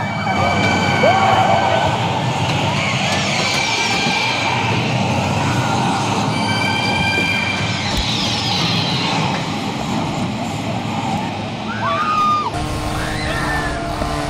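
Loud horror-attraction soundtrack: a dense wash of noise and effects in which a wailing, siren-like tone sounds twice, each time with falling sweeps. A music track with a deep bass comes in near the end.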